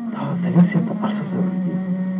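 A person's voice speaking over a steady low hum.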